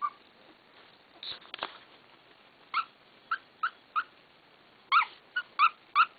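Three-week-old goldendoodle puppies giving short, high-pitched squeaky whimpers, about nine brief squeaks that come in quick runs, mostly in the second half. A few soft knocks sound about a second in.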